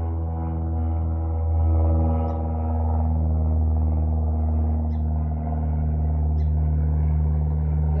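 Airplane flying overhead: a steady, loud hum made of several pitches, swelling slightly about two seconds in.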